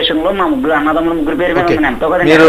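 Speech only: a caller talking over a telephone line, the voice thin and cut off above the narrow phone band.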